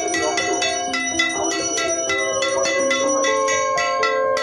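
Brass puja hand bell rung steadily, about four strokes a second, over a voice holding long sung notes.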